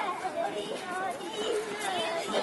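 Children's voices chattering and calling to one another, several voices in turn.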